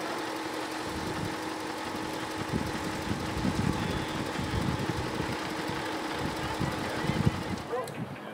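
Car engines running at low speed, with a steady hum and an irregular low rumble underneath.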